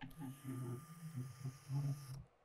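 Small LEGO robot's electric drive motors running as it drives forward, a low hum that wavers in loudness. It cuts off at the end, when its ultrasonic sensor detects a hand in its path and stops the motors.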